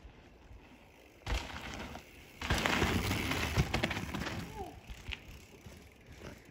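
Mountain bike tyres rolling and scrubbing over rock and dirt trail, with a few knocks from the bike over the bumps. The noise comes in briefly about a second in, then louder about two and a half seconds in for some two seconds before fading.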